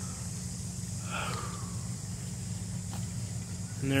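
Outdoor ambience: a steady high drone of insects over a low, steady hum, with one faint brief sound about a second in.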